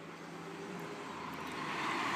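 A motor vehicle running, its engine and road noise growing steadily louder as it comes nearer.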